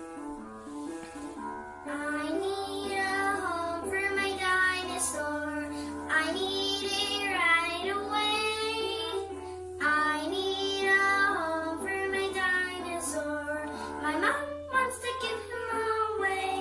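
A young girl singing over instrumental accompaniment; the accompaniment plays alone at first and her voice comes in about two seconds in, holding long, sliding notes.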